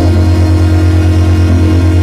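Loud langarm dance music from an electronic keyboard: a deep bass note held steadily under a sustained chord.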